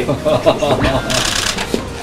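A group of men laughing and chuckling, with a brief papery rustle about a second in.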